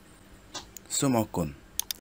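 A short spoken word about a second in, then two sharp clicks near the end.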